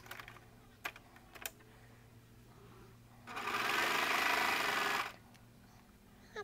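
Baby Lock Celebrate serger running in one short steady burst of about two seconds, starting about three seconds in, serging a seam in knit fabric, then stopping abruptly. Two faint clicks come before it.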